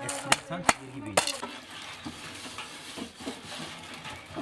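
Wooden pestle pounding wild pear pieces in a metal pot, crushing the fruit: three sharp knocks in the first second or so, then a quieter, even noise.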